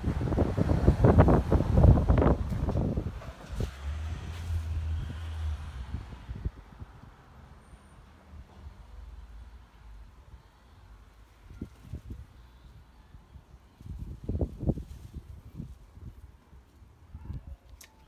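Gusts of wind buffeting an outdoor microphone as low rumbling. The gusts are strongest in the first three seconds and come back briefly about 14 seconds in, with a short low steady hum about 4 seconds in.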